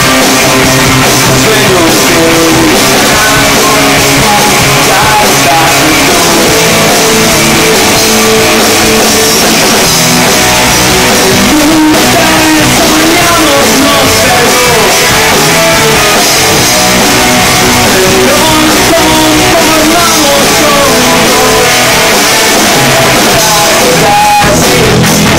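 A rock band playing live, with drum kit, electric guitar and bass guitar, and a man singing over it; loud and steady throughout.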